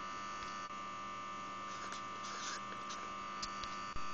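Steady electrical hum with a thin higher tone over it, and a few faint scratches of a marker on paper about two seconds in.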